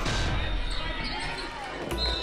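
Live gym sound from a basketball game: voices from the crowd and players, with a basketball bouncing on the hardwood court.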